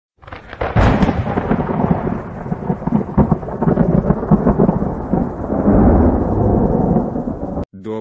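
Thunder sound effect: a sharp crack about a second in, then a long rolling rumble that cuts off suddenly near the end.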